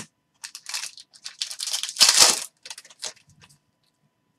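A plastic trading-card pack wrapper being torn open and crinkled, in a series of short rustles with the loudest tear about two seconds in.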